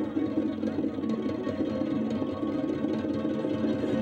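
Ukulele played solo, a fast, continuous run of plucked notes.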